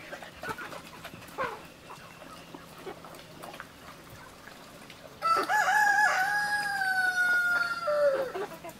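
A rooster crowing once, starting about five seconds in: a broken opening followed by a long held note that sags slightly in pitch and drops away at the end.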